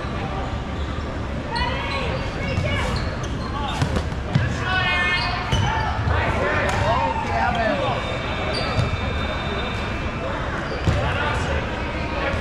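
Rubber dodgeballs thrown and striking the hard sports-hall floor and players, several sharp hits spread a second or more apart.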